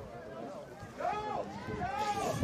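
Two shouted calls from players on the pitch, each rising and falling in pitch, one about a second in and one near the end, over faint outdoor ambience.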